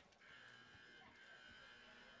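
Near silence, with a faint steady high hum and a small click at the very start.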